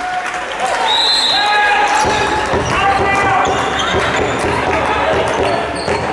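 A handball bouncing on the sports hall floor as players dribble and run, with short squeaks from shoes on the court and voices calling out in the hall.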